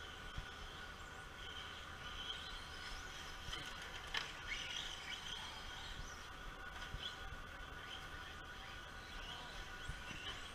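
Faint, steady whine of radio-controlled cars running on a dirt track, with a few brief sliding chirps a few seconds in.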